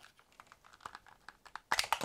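Hard plastic Nerf blaster parts clicking and knocking as they are handled: a scatter of light clicks, with a louder clatter near the end.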